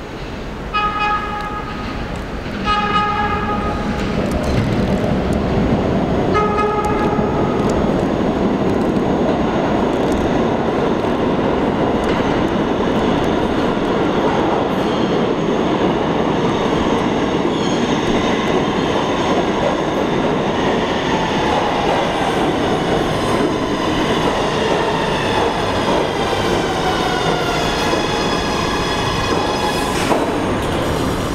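Kawasaki R211A subway train sounding three horn blasts as it approaches through the tunnel: two short ones close together, then a slightly longer one. It then runs loudly into the station, and in the second half its propulsion whines glide downward in pitch as it slows.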